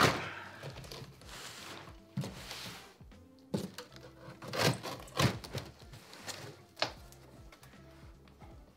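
A large cardboard box being cut and pulled open: the knife scraping through cardboard, the plastic-wrapped lid and the flaps rustling, with irregular thuds and knocks as they are handled. Quiet background music runs underneath.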